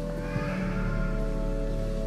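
Church organ holding sustained chords. A brief high falling sound comes in the first second, and a faint knock about a third of a second in.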